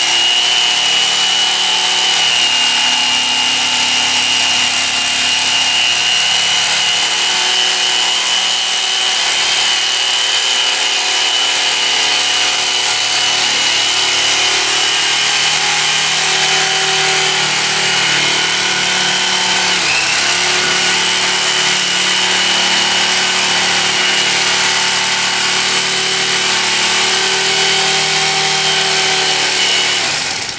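Black and Decker electric carving knife running steadily with a high whine, its reciprocating blades sawing through a thick sheet of dense foam.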